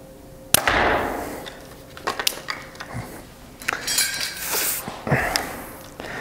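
Bowtech Core SR compound bow released from full draw about half a second in: a sharp shot that fades over about a second. It is followed by scattered clicks and rustling as arrows are handled.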